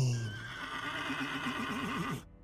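A horse whinnying: a wavering call whose pitch shakes faster toward the end.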